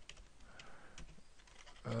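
Computer keyboard being typed on: a quick run of light key clicks.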